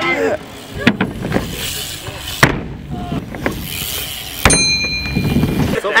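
BMX bike riding skatepark ramps: a steady rumble of tyres rolling, with several sharp knocks from the bike hitting and landing on the ramp. The loudest knock comes a little past four seconds in and is followed by a brief thin ringing.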